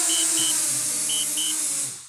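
DJI Spark mini drone's propellers humming with a high whine as it descends onto a table to land, with a pair of short alert beeps repeating about once a second; the motors cut off and the sound dies away at the very end as it touches down.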